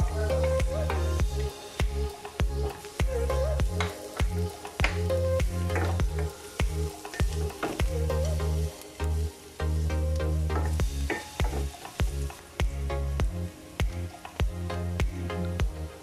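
Minced garlic sizzling in cooking oil in a nonstick frying pan, stirred with a wooden spatula, with many light clicks. Background music with a bass line that comes and goes plays over it.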